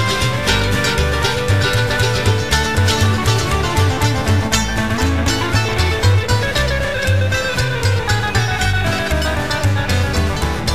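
Country band playing live with no vocals: an instrumental break of electric and acoustic guitar over upright bass and drums, at a steady beat.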